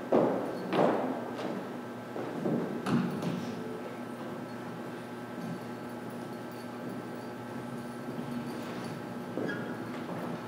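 A few knocks and thuds in the first three seconds, then quieter shuffling, from performers moving about on a wooden stage, over a steady hum.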